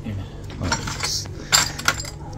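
A clear plastic medicine-organizer drawer being pulled open, with two bursts of clicking and rattling as the glass ampoules inside clink against each other.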